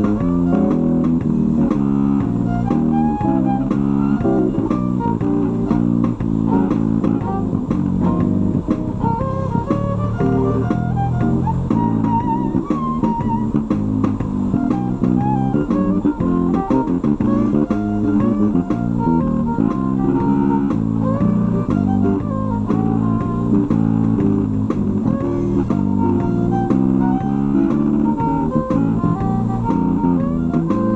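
A violin playing a blues melody with a bow over a steady guitar-and-bass accompaniment.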